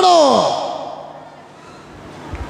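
A man's voice, picked up by a headset microphone, ending a drawn-out call with a steeply falling pitch like a long sigh, which dies away within about a second into quiet room noise.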